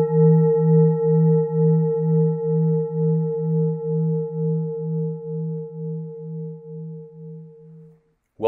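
A struck bell rings out with a deep hum and several higher overtones, slowly fading. The hum pulses about two or three times a second. It cuts off near the end.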